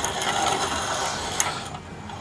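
A hand-cranked manual piston ring filer turning its 120-grit abrasive wheel against the end of a piston ring to open up the ring end gap. The steady mechanical grinding fades out near the end.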